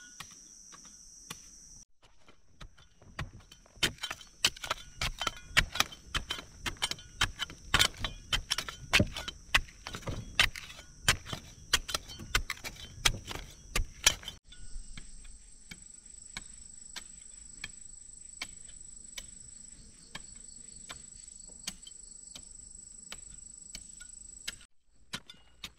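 A small hand pick striking and breaking up packed earth and crumbly rock, about two to three blows a second, loudest through the first half and fainter and sparser after about the middle. A steady high insect drone runs beneath.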